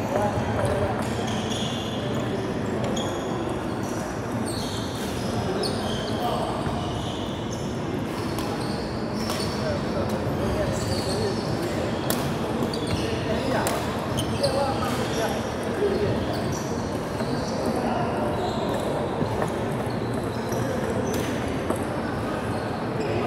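Badminton shoes squeaking on a wooden court throughout, with sharp racket strikes on the shuttlecock clustered in the middle, over a background of voices in a large echoing hall.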